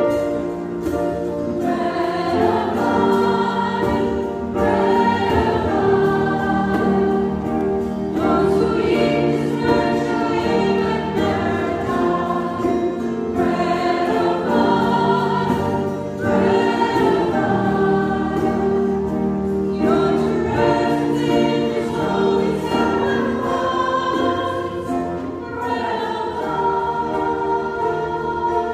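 A youth choir singing a hymn with keyboard accompaniment, in sung phrases a few seconds long over sustained chords.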